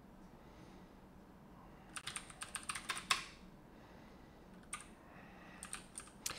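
Typing on a computer keyboard: quiet at first, then a quick run of keystrokes about two seconds in, a single keystroke a little later, and a few more near the end.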